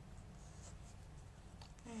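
Faint scratching of a fine-tip Micron pigment-ink pen drawing lines on sketchbook paper.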